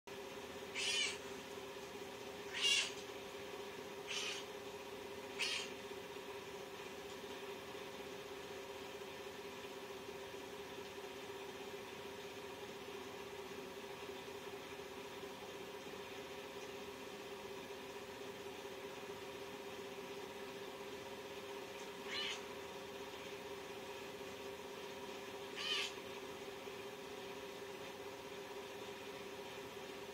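A young tabby cat giving short, high-pitched meows: four in quick succession during the first six seconds, then two more about 22 and 26 seconds in. A steady low hum runs underneath.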